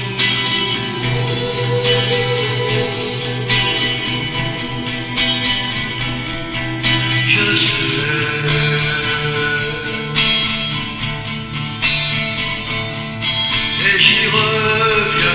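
Acoustic guitar strummed in a steady rhythm, with a man singing long held notes over it.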